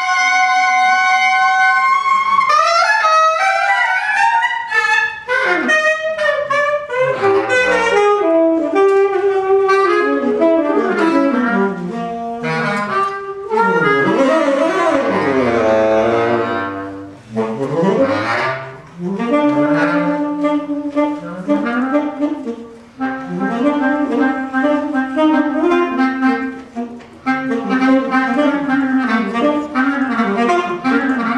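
Jazz duet of saxophone and bass clarinet playing melodic lines together and in turn, with no drums or piano heard. From about two-thirds of the way in, a low, steadier line sits under the higher melody.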